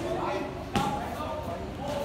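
Muay Thai gym sounds: one sharp smack of a strike landing on a bag or pad about three quarters of a second in, over background voices of people in the gym.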